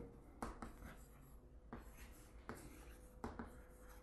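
Chalk writing on a chalkboard: faint, irregular scratches and taps of the chalk strokes.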